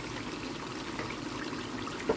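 Beef simmering in its own juices in a frying pan on a gas hob, a steady sizzle.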